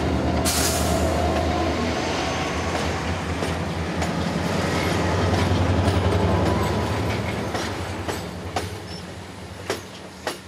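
Orient Express passenger carriages rolling slowly past at close range: a steady rumble of wheels on rails with scattered clicks as the wheels cross the rail joints, fading over the last few seconds.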